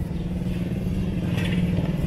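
A small motorcycle engine running close by, growing louder as it passes.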